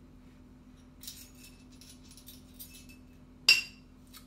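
Faint light scraping from handling, then one sharp clink with a brief ring about three and a half seconds in: a teaspoon knocking against the food processor bowl as half a teaspoon of salt is measured in.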